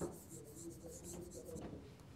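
Felt-tip marker writing on a whiteboard: faint squeaky strokes and rubbing of the tip on the board, with a light tap at the start as the marker meets the board.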